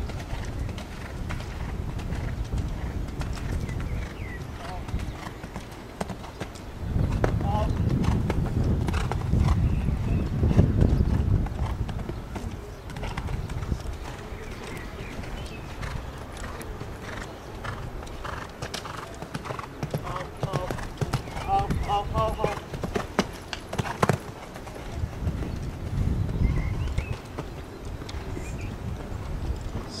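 Hoofbeats of a horse cantering on the sand footing of a show-jumping arena, over a low rumble, with voices faintly in the background.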